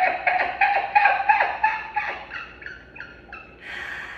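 A woman laughing heartily: a long run of quick laugh pulses, about five a second, that trails off two and a half to three seconds in, followed by a short breathy sound near the end.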